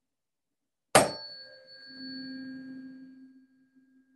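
Middle C tuning fork struck once with a sharp metallic strike, then ringing a steady pure tone, the pitch she gives for a bumblebee's buzz. A faint high overtone dies away within a couple of seconds, while the main tone grows louder about two seconds in and then slowly fades.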